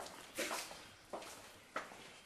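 Footsteps on a hard floor in a small, echoing corridor: three sharp steps about two-thirds of a second apart.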